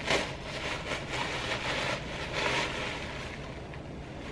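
Tissue paper rustling and crinkling as a small ornament is unwrapped from it, in several rustling bursts that fade out after about three seconds.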